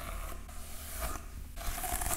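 A plastic detangling hairbrush being pulled through long hair, its bristles scraping and rustling through the strands.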